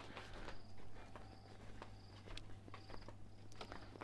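Faint footsteps walking on wooden decking. Behind them, a faint high chirp repeats about twice a second.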